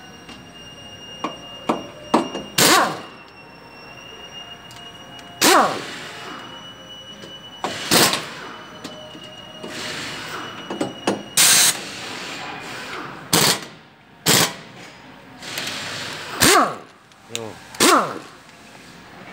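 Sharp metal-on-metal knocks at a Mitsubishi Pajero's front brake caliper while the brake pads and their retaining pins are being fitted, about eight single knocks a couple of seconds apart, each ringing briefly.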